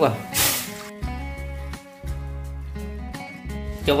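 Water poured from a plastic jug into an aluminium pot: a brief splashing rush about half a second in. Background music with a steady bass follows and runs under the rest.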